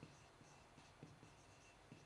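Faint squeaks and scratches of a dry-erase marker writing on a whiteboard, over near silence.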